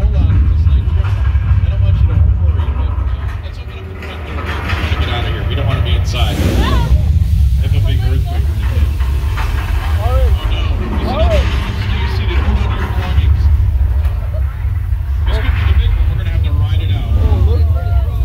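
Deep, continuous rumble of a staged subway-station earthquake effect, with voices and shouts rising over it at intervals.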